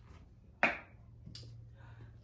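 Handling noise: one sharp knock a little after the start, then a fainter tick, as objects such as candle jars are picked up and set down. A faint steady low hum runs underneath.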